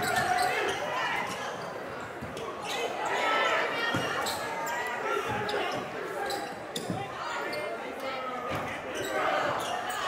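Live game sound in a crowded gymnasium: steady crowd chatter with a basketball bouncing on the hardwood floor a few times.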